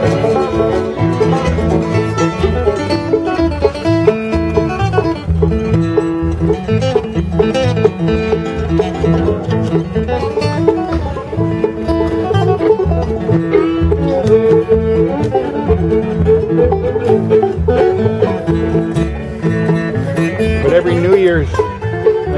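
Acoustic bluegrass jam: banjo, mandolin, fiddle and upright bass playing an instrumental tune together, with the banjo prominent over a steady bass beat.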